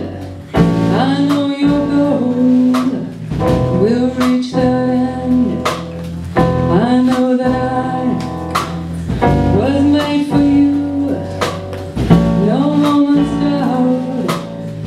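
A live rock band playing a slow song: an electric guitar melody with sliding notes over a drum kit and keyboard, the drums marking a steady beat.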